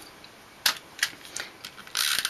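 A few short, light clicks and taps from hands handling small paper pieces and craft tools on a work mat.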